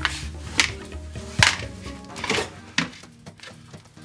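Light background music, with several sharp knocks at uneven intervals in the first three seconds; it grows quieter toward the end.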